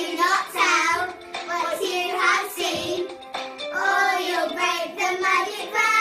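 A group of children singing a song together.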